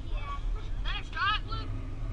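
High-pitched young voices calling out across the field, loudest in a couple of short, bending shouts about a second in, over a steady low rumble.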